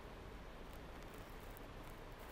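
Faint, steady background hiss and room tone, with no distinct sound.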